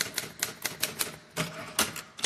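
Typewriter keys striking: about eight sharp clacks at roughly four to five a second, with a short pause after the first second.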